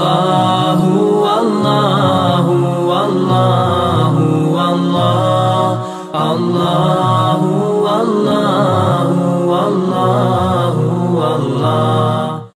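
Outro nasheed: voices chanting a melody in harmony, dipping briefly about halfway through.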